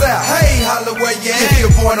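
Hip hop track: a beat with deep bass hits that slide down in pitch several times, under vocals.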